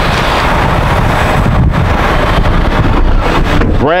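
Wind blowing across the microphone: a loud, uneven low rumble with hiss above it, with a voice coming in right at the end.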